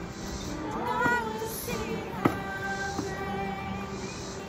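Acoustic guitar playing with voices singing a worship song. There is one sharp knock a little past the middle.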